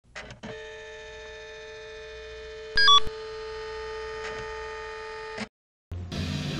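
Steady electronic tone held for about five seconds after two short blips, with a louder, brief two-note beep about three seconds in; the tone cuts off suddenly.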